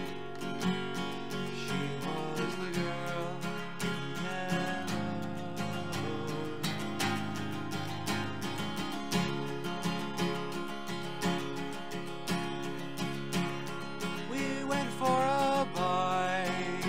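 Acoustic guitar strummed steadily with a capo on the second fret, playing C and F chord shapes.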